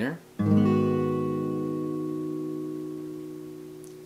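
A capoed acoustic guitar strummed once in an E minor seven chord shape, the chord left to ring and fade over about three and a half seconds.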